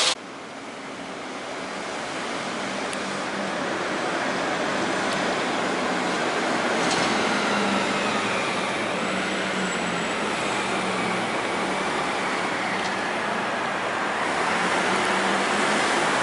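Steady city traffic noise, an even roar with a faint low hum, building over the first few seconds and then holding steady.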